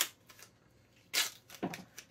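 Clear duct tape being handled on the glass side of a fish tank: two short rips of tape, one at the start and one just over a second in, with quiet between.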